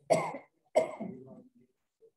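A person coughing twice, the second cough about three-quarters of a second after the first and trailing off.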